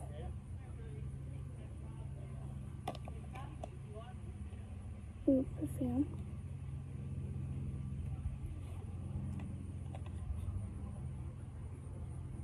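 Steady low background hum, with a faint click about three seconds in and a brief voice-like sound about five seconds in.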